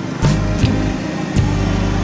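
Music with sustained low bass notes that shift every second or so, and a few sharp percussion hits.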